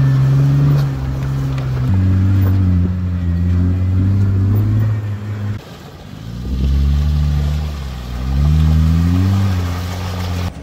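Jeep Wrangler Unlimited Rubicon's V6 engine running under load at a steady pitch that shifts in steps, then revving up twice in the second half as it drives through a shallow creek crossing.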